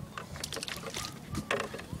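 Quiet waterside ambience: faint lapping water under a pier, with a few small clicks.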